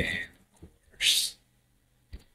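The tail of a man's spoken word fading out, then a short breathy hiss about a second in.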